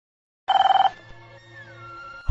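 Landline telephone ringing: one short, trilling ring about half a second in, lasting about half a second. Faint sustained music tones follow.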